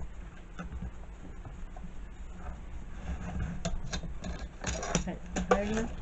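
Small clicks and taps from handling clear acrylic stamps on a hinged stamping platform, as the stamp is pressed into position and the platform is worked.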